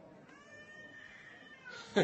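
A faint, drawn-out high-pitched cry lasting about a second and a half, falling in pitch at the end.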